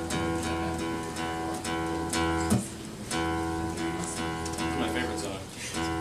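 Acoustic guitar strummed in a repeated chord pattern: two matching phrases of about two and a half seconds, each ending in a brief pause.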